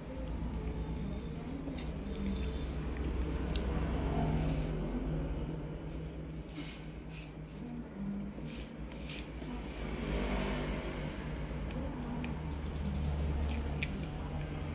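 Close-miked chewing of soft cream cake: soft wet mouth sounds with scattered small clicks and lip smacks, over a low steady hum.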